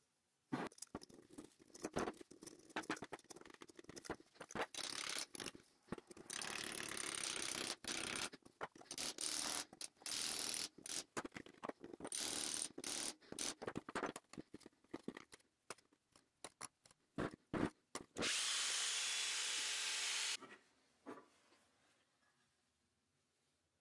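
Steel wire-rope strands clicking and rattling against one another and a square steel tube canister as they are packed in by hand, with several stretches of gritty rustling, the longest near the end.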